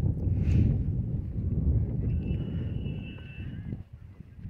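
Footsteps walking on a paved path, heard as a low, uneven thudding rumble through a phone microphone.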